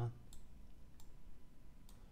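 Three faint, scattered clicks of a stylus pen tapping on a tablet screen while handwriting is added to a slide, over quiet room tone.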